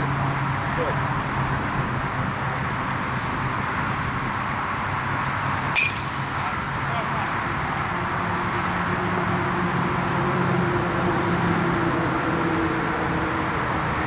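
A baseball bat hits a ball once, about six seconds in, a sharp crack with a brief ringing ping, over a steady low mechanical hum and background noise.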